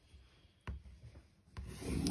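Children's crayon scribbling circles on tracing paper, a dense scratchy rubbing that starts up near the end after a quiet pause. A single short tap comes about two-thirds of a second in.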